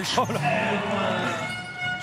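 A commentator's voice: a short burst of speech, then one drawn-out vocal sound held for about a second and slowly falling in pitch, over the arena's background.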